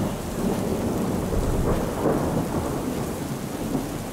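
Steady rain with a low rolling rumble of thunder that swells about halfway through and eases off near the end.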